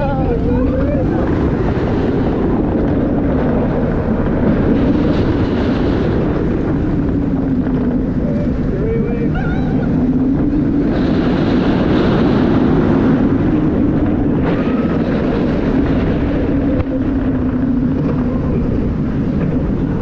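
Steel floorless roller coaster train running along its track, a loud steady rumble whose pitch rises and falls as it swoops through the banked turns, with wind buffeting the rider-mounted microphone.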